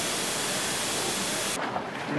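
Steady, even hiss of background noise that cuts off suddenly about a second and a half in.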